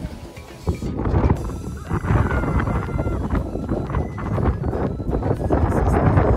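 Strong gusting wind buffeting the phone's microphone, a dense, irregular low rumble that gets louder about two seconds in.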